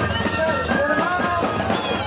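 Andean moseñada band music: moseño cane flutes playing a wavering melody over a steady low drone, with snare drums, bass drum and cymbals keeping the beat.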